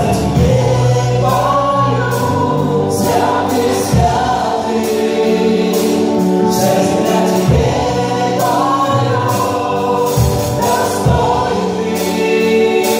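Live gospel worship song: several voices singing together over an amplified band of acoustic and electric guitars and a drum kit, with drum and cymbal strokes throughout.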